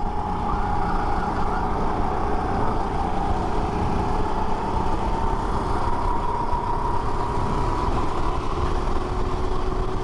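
Rental go-kart's engine running at speed on track, heard from on board. Its pitch climbs slowly over most of the stretch, then drops to a lower note near the end as the revs come down.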